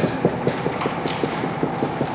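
Dry-erase marker stroking across a whiteboard in a quick, even run of short hatching strokes, several a second, over a steady room hum.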